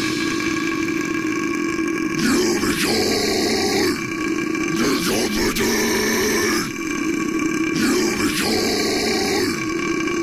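Deep, guttural grunting vocal sounds, repeated every second or so over a steady drone, with the band's guitars and drums stopped.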